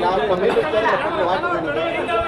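Speech only: a man speaking Tamil into press microphones, with other voices chattering around him.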